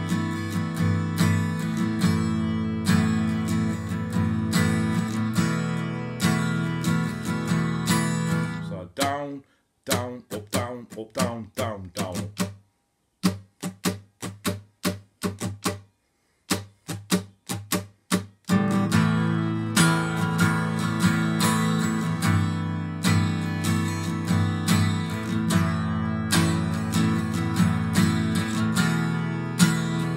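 Steel-string acoustic guitar strumming chords in a steady rhythm. For about nine seconds in the middle the strumming breaks into separate short strokes with brief silences between them, then the full strumming comes back.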